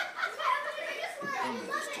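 Several people talking over one another, with a child's voice among them.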